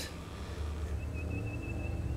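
Far-off airboat engine and propeller droning steadily, low-pitched. A faint, thin high tone comes in about halfway through.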